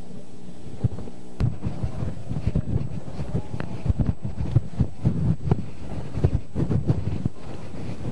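Wind buffeting an outdoor microphone in irregular low rumbles and thumps, starting about a second and a half in, after a steady low hum.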